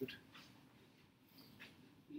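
Near silence: quiet room tone, with a brief faint click right at the start and a few small faint sounds after it.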